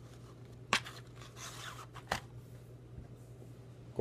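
A man puffing on a tobacco pipe: two soft clicking pops about a second and a half apart, with a short breathy puff between them, over a steady low hum.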